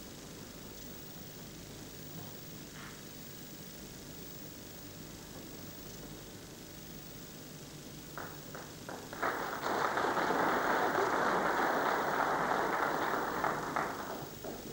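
Snooker audience applauding: a few scattered claps about eight seconds in build into a burst of applause lasting about five seconds, which dies away near the end.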